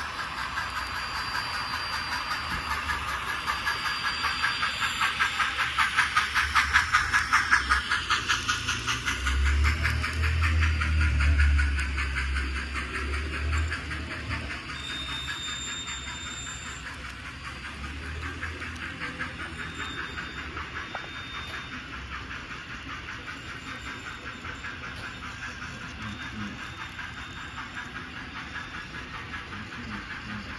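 N scale model diesel locomotives passing with an odd rhythmic chuffing and hiss, which is loudest as the engines go by in the first several seconds. A low rumble follows, then a quieter steady running noise as the freight cars roll past.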